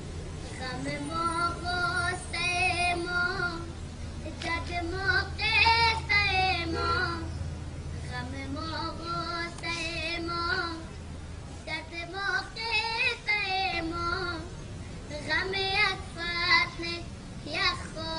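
A boy singing solo, long held notes with a wavering vibrato, in several phrases with short breaths between them.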